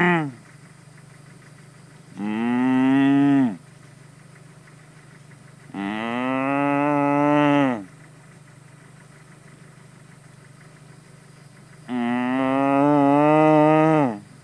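A person mooing loudly to call cattle. There are three long moos, each one and a half to two seconds, with the pitch dropping at the end, and another moo just ending at the start.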